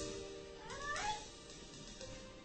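Soft background music holding a steady chord, with a short wavering cry that rises in pitch about half a second in and fades by just past a second.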